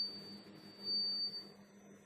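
Dry-erase marker squeaking on a whiteboard: two drawn-out, thin, high squeaks, the second about a second in, over a faint steady low hum.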